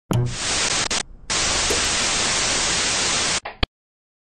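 Steady hiss of static, like white noise, in two stretches broken by a short drop about a second in, ending with a brief burst that cuts off suddenly.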